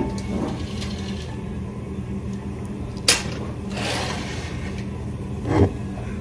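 A steady low mechanical hum runs throughout. A sharp click comes about three seconds in, a short rustle follows about a second later, and a low thump comes near the end.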